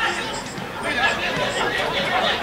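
Footballers' voices calling and shouting to each other on the pitch during play.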